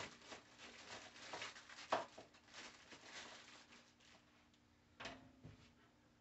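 Faint handling noise of plastic shop-vac parts and pliers on a workbench: scattered light clicks and knocks, the clearest about two and five seconds in.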